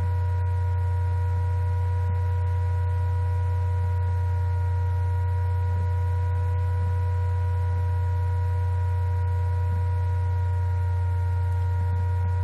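Steady laptop cooling-fan noise picked up by the laptop's own microphone: a loud, unchanging low hum with several thin steady whining tones above it.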